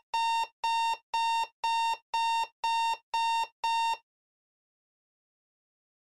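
Digital alarm clock going off: a run of identical beeps, about two a second, that cuts off abruptly about four seconds in.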